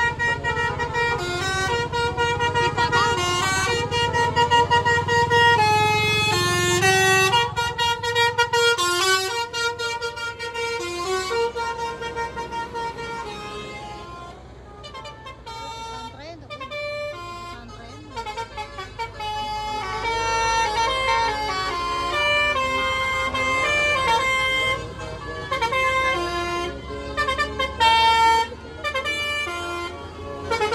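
Tour-bus telolet horns playing stepped multi-note tunes, several overlapping, loud and nearly continuous with a softer stretch about halfway through. A low engine rumble lies under the horns early on.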